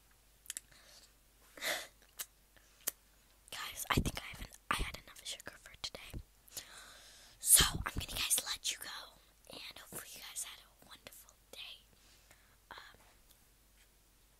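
A girl whispering close to the microphone in short, breathy phrases with pauses between them.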